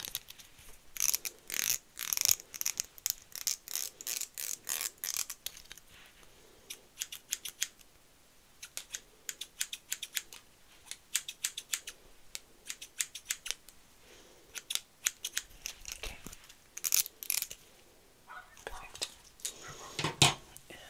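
Hairdressing scissors snipping close to the microphone: quick runs of crisp snips with short pauses between them.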